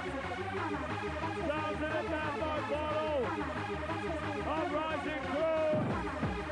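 Mid-1990s rave techno playing in a DJ mix: a steady beat under synth lines that glide up and down in pitch.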